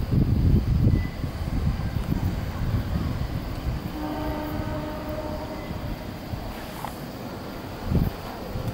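A train horn sounds for about two and a half seconds from about halfway through, as a chord of steady tones, over a low rumbling.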